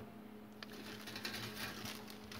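Faint handling noise of plastic model-kit sprues being moved about: soft rustles and a few small clicks, over a low steady hum.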